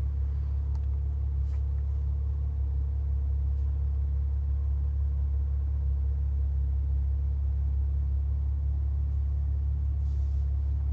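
Steady low rumble inside a Maserati Ghibli's cabin with the car's engine running, even and unchanging throughout.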